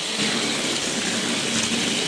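Two motorized Crush Gear toy battle cars running and pushing against each other in a small arena, their electric motors and wheels making a steady whirring hiss.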